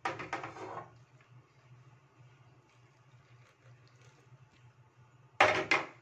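An aluminium pot and its tongs clattering against a gas stove while chai is strained. There is a brief rush of noise at the start, then a faint steady low hum, and a few loud metal clanks near the end.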